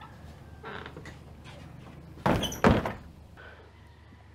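Two loud knocks or thuds in quick succession, a little over two seconds in, like a wooden door being struck or banged, with fainter knocks and rustling around them.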